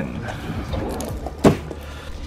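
A large cardboard toy box being handled, with one sharp thunk about one and a half seconds in as it is set down on the table.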